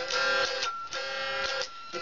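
Electric guitar playing strummed chords, each chord ringing on and struck anew every half second to second.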